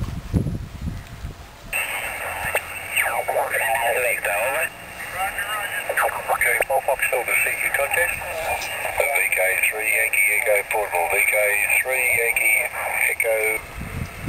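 Single-sideband voice signals on the 14 MHz (20 m) band, heard through the small speaker of a Yaesu FT-817 QRP transceiver. The voices sound thin and band-limited, and they slide in pitch as the dial is tuned across the band. Wind rumbles on the microphone for the first second or two, before the radio audio comes in.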